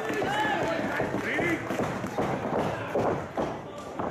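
Wrestling crowd shouting and calling out, then a run of heavy thuds from about halfway through as a wrestler runs across the ring canvas.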